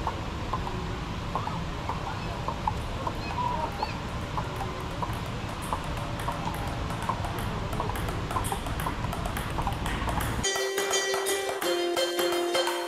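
Table tennis rally: the ball clicks off paddles and table at an uneven pace over a steady background noise. Near the end this cuts to music with a steady beat.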